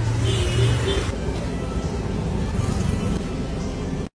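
Street traffic noise, steady, with a louder vehicle sound in about the first second.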